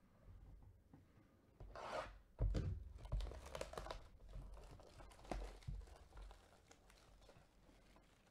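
Plastic shrink wrap being torn off a cardboard card box and crinkled by gloved hands. A run of rips and rustles starts about a second and a half in, is loudest just after, and tapers off in smaller crinkles toward the end.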